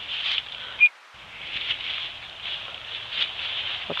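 Irregular rustling and crunching of footsteps moving quickly through leaves and brush, with the carried camcorder shaking. About a second in there is a short, sharp high-pitched blip, the loudest moment, followed by a brief dropout.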